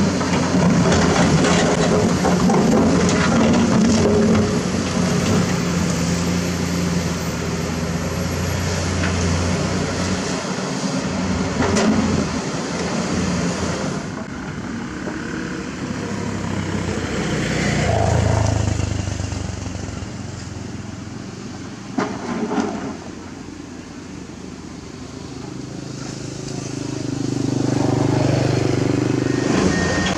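Diesel engines of hydraulic crawler excavators running under load as they dig rock and dirt, the engine note rising and falling as they work. A few sharp knocks of rock or bucket are heard.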